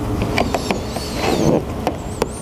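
A plastic squeegee scraping and squeaking over wet tint film on a headlight lens, with a few small clicks and a longer rubbing stroke about a second in.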